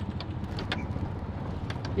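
Tuk-tuk (auto-rickshaw) running under way, heard from inside the open passenger compartment: a steady low engine and road rumble with a few light rattles.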